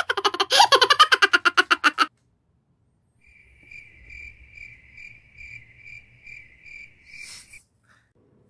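Comedy sound effects added in editing: first a loud, fast chattering run of pitched pulses lasting about two seconds, then, after a short gap, a single high tone that swells about twice a second for about four seconds.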